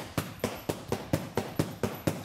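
Arnis stick striking a hanging heavy bag in a steady abanico fan-strike drill: sharp, even knocks at about four a second, at a slow opening pace.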